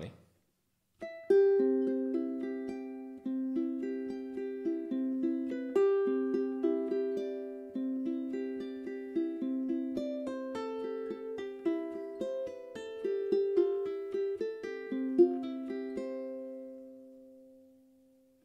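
Flight Fireball ukulele played slowly fingerstyle: a plucked, arpeggiated passage of single notes with pull-offs, the notes ringing over one another. It starts about a second in and ends on a held note that dies away near the end.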